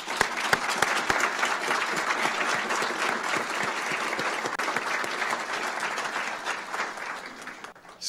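Audience applauding, with the speaker at the podium clapping along. The applause fades away near the end.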